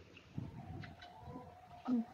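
Faint cooing of a dove.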